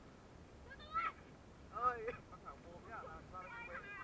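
People's voices: short calls and chatter, in brief bursts about one and two seconds in and more steadily near the end.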